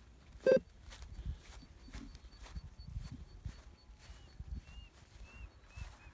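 Footsteps and handling on a grassy canal bank, with irregular soft low thumps. About half a second in comes one short, loud pitched call. A few faint bird chirps follow near the end, over a thin high steady tone.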